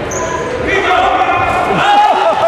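Live basketball game sound in a large gym: sneakers squeaking on the hardwood court, players and onlookers calling out, and a ball bouncing, all with the hall's echo. The squeaks come thicker in the second half.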